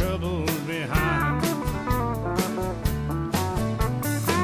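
Country band music with drums, bass and guitar, carrying a lead melody of bending, sliding notes in a passage without transcribed vocals.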